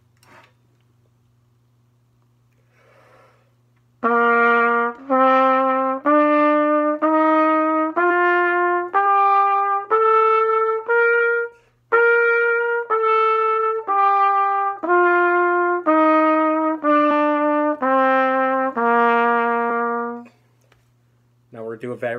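B-flat trumpet playing a one-octave concert B-flat scale (C on the trumpet) in even quarter notes, eight notes stepping up and eight stepping back down, each about 0.8 s long, with a short breath between the two top notes. A low steady hum runs underneath.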